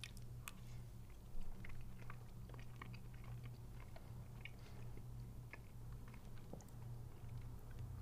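Faint chewing and small mouth clicks from a person eating a spoonful of cookies-and-cream ice cream, over a steady low hum.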